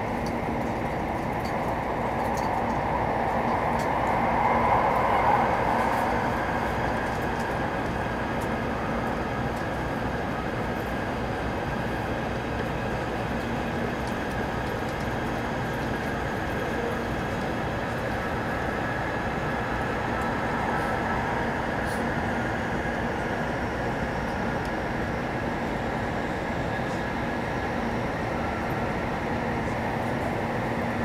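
Interior running noise of a Taiwan High Speed Rail 700T trainset, heard inside the passenger cabin: an even rush of wheel and air noise with a faint steady hum. It swells briefly about four to six seconds in.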